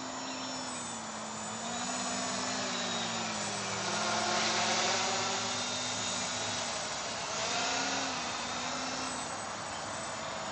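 660 Scarab quadcopter's electric motors and propellers buzzing in flight, the pitch wavering up and down as the throttle changes. It grows louder about halfway through as the quad passes closer, then eases off.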